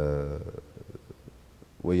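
A man's voice in conversation: a drawn-out held vowel at the start, a pause of about a second with faint small clicks, then speech resumes near the end.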